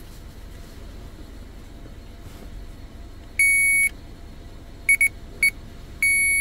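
Handheld power-probe circuit tester beeping as its tip touches a wire: one half-second beep about three and a half seconds in, then three short beeps near the end. The beep signals that the wire is carrying positive voltage.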